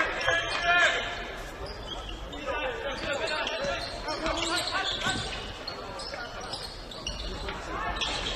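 A basketball being dribbled on a hardwood court in a large gymnasium, with players and bench voices shouting over it; the voices are loudest in the first second.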